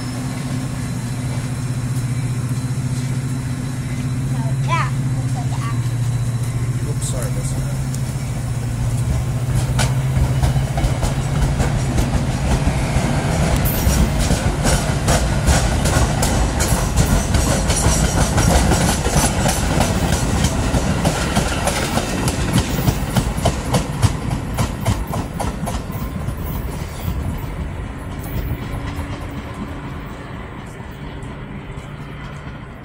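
Trains moving through a station: railcar wheels clacking over rail joints in a quickening, louder run from about ten seconds in, as a freight train of hopper cars rolls past. A steady low diesel engine hum sits under it for the first dozen seconds.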